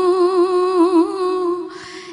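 A girl's solo voice reciting a naat with no accompaniment, holding one long note with small melodic turns. The note breaks off for a breath near the end.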